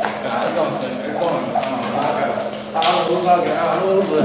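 Jump rope slapping the floor in a steady rhythm, about three sharp ticks a second, with voices in the background.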